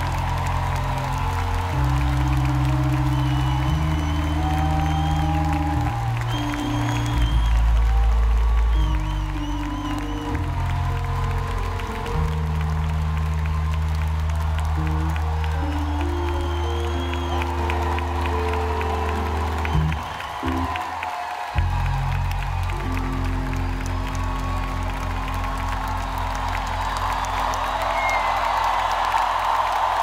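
Live electronic music through a festival PA: deep, sustained synth bass chords that change every second or two, a brief drop-out about twenty seconds in, then a fast, even bass pulse. A crowd cheers over it.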